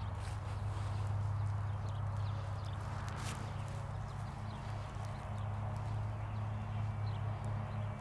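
Steady low hum with a few faint soft knocks, and one sharper knock about three seconds in.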